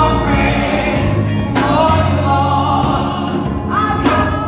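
Gospel music: a trio of women singing held notes in harmony over a low, steady accompaniment, the voices moving to new notes about one and a half seconds in and again near the end.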